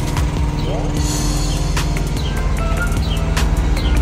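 Diesel engine running steadily with a low drone, with a few short chirps and clicks over it.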